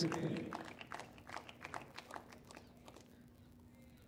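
Scattered hand-clapping from a small crowd after a won padel point, fading out over about two and a half seconds. A commentator's short 'oh' comes at the start, and a faint steady low hum remains in the second half.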